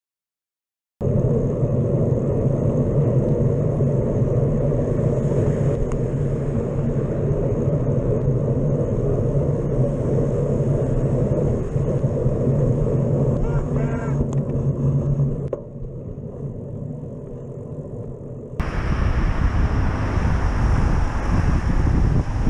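Steady rumble of wind and traffic on a bicycle-mounted camera while riding through town, after about a second of silence at the start. The noise dips for about three seconds near the end, then comes back louder and hissier.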